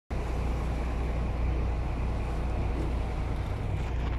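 Boat engine running steadily with a low rumble, mixed with wind and water noise.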